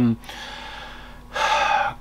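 A person's sharp in-breath through the mouth, about half a second long, taken near the end just before speaking again.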